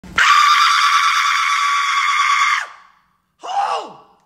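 A person screaming loudly and steadily for about two and a half seconds. Near the end comes a short exclaimed "who?" that falls sharply in pitch.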